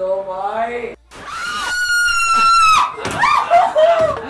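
A woman screaming in fright: one long, high-pitched scream held for about a second and a half starting about a second in, then shorter cries.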